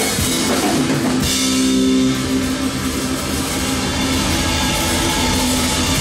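A rock band playing live: drum kit with cymbals and electric guitar. About a second in, the music changes abruptly to held notes over the drums.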